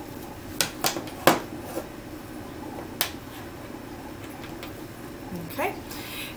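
A few sharp plastic clicks and taps, about five in the first three seconds, as small IV supplies (the primed extension tubing and its clamp) are handled and set down on a table.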